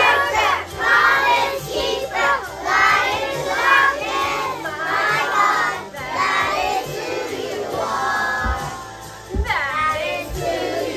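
A group of young children singing together along with a recorded worship song and its backing music.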